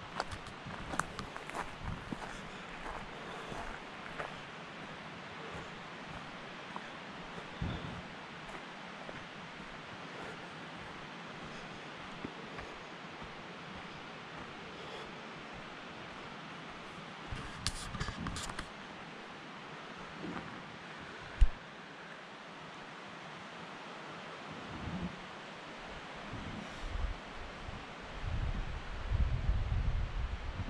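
Footsteps and rustling on dry pine needles and twigs over a steady outdoor hiss, with a single sharp knock about two-thirds of the way through and low rumbling handling noise near the end.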